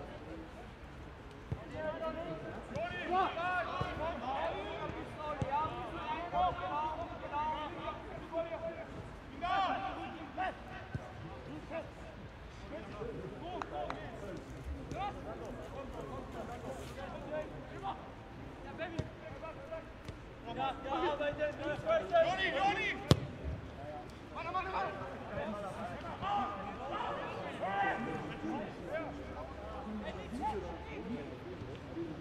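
Football players shouting and calling to each other on the pitch, with the dull thuds of the ball being kicked and one sharp, loud kick about three-quarters of the way through.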